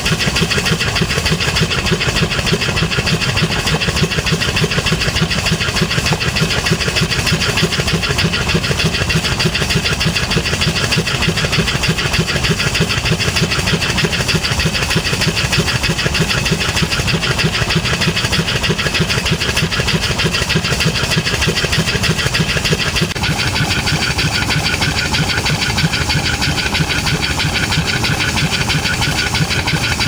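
A 5 hp single-cylinder steam engine running steadily on steam from a vertical boiler. It makes a fast, even beat of exhaust chuffs over a constant hiss of escaping steam.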